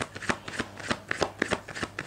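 A deck of tarot cards being shuffled by hand: a quick, uneven run of card snaps, about five or six a second.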